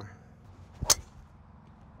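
A golf driver hitting a ball straight off the turf, with no tee: one sharp crack of the clubface about a second in.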